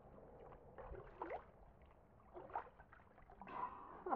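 Water splashing and sloshing in a plastic kiddie pool as hands scoop it over a small wet dog: a few short, faint gurgling splashes.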